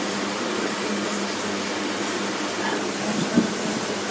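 Masala paste frying in oil in a frying pan, a steady sizzle as it is stirred with a wooden spatula, with a couple of soft knocks of the spatula about three seconds in.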